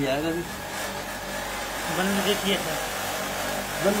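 Air conditioner running while being charged with refrigerant gas: a steady fan-and-compressor noise with no change in pitch.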